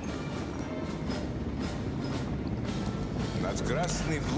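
Military band music playing in the background, with a faint beat about twice a second.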